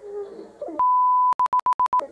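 A brief laugh, then a loud, pure electronic beep at one steady pitch held about half a second, followed by a rapid run of short beeps at the same pitch, about ten a second.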